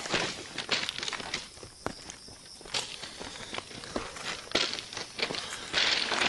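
Footsteps of people walking over rough ground: irregular scuffs and crunches.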